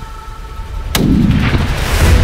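A single rifle shot from a scoped hunting rifle about a second in, followed by a low echo that fades away over the next second.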